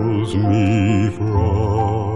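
Southern gospel male vocal group singing a slow hymn in close harmony from a 1964 vinyl LP, the voices holding chords with a wide vibrato over a sustained low accompaniment, changing chord about half a second in and again past the middle.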